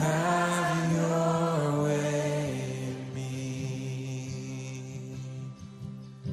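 Worship song in which a voice holds long, steady sung notes over soft accompaniment. The notes step down in pitch about one and a half seconds in, and the sound fades a little towards the end.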